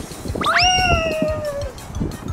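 A child's high-pitched squeal as he goes down a plastic playground slide: a sharp rise, then held and slowly falling for about a second.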